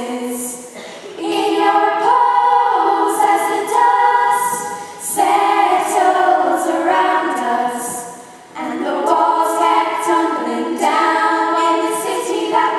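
Girls' choir singing a cappella, several voices together, in phrases broken by three short pauses.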